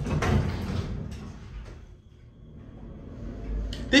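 Elevator car doors sliding shut, ending with a short knock about a second in. Near the end a low rumble builds as the car starts to move off.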